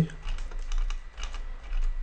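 Light, irregular clicking from computer controls, several clicks a second, over a steady low electrical hum.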